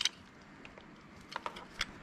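A few faint, short clicks near the end as a knife blade scores and nicks the plastic outer jacket of a network cable, worked carefully so as not to cut into the thin wires inside.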